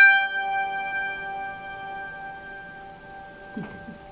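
Strings of a 1935 violin uke, a bowed zither, ringing on after the final note and slowly fading away over about three seconds.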